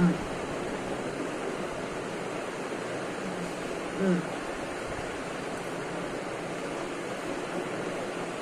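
A man humming a short closed-mouth 'mm' twice while tasting food, once at the start and again about four seconds later, over a steady hiss of background noise.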